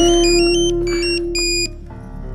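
Film background music: a sustained low note under a quick run of high, beeping tones that step up and down in pitch. Both stop abruptly about 1.7 seconds in.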